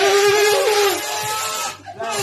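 A man blowing a horn-like note through an aluminium cider can held in his mouth. The note is held steady with a brief jump in pitch about half a second in, and stops about a second in. A quieter sound follows.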